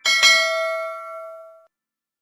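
A notification-bell 'ding' sound effect: one bright bell strike whose ringing fades away over about a second and a half, then stops.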